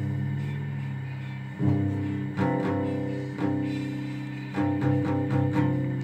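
A guitar being tuned: single strings are plucked about four times and left to ring, each note slowly fading.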